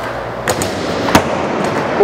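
Skateboard wheels rolling on a concrete floor, with two sharp clacks of the board: a tail pop about half a second in and a louder landing slap just after a second in.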